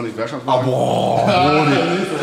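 A man's voice making a long, gravelly growling sound without words, starting about half a second in.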